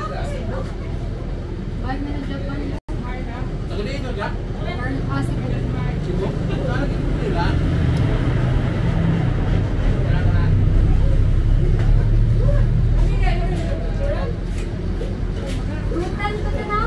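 Low engine rumble of a bus that swells from about five seconds in and eases off near the end, under background chatter of voices.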